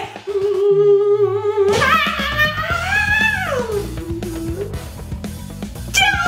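A woman's voice holding one long wordless note, then gliding up and back down in pitch, over backing music.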